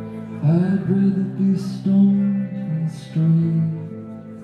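Live song: an electric guitar holding a chord, with a man's voice singing a melodic line over it from about half a second in.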